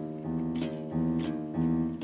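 The low E string of a nylon-string classical guitar is plucked three times, about twice a second, each note ringing briefly. The string is being tuned up to pitch from slack.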